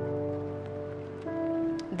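Background music of soft, sustained held notes, with a new note coming in a little over a second in.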